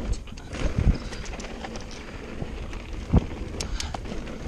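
Mountain bike running fast down a dirt singletrack: tyres rolling on dirt with irregular rattles and knocks from the bike over bumps, a heavy thud about a second in and the loudest one just past three seconds, then a few sharp clicks.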